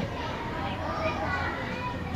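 Faint, distant children's voices over a low steady hum.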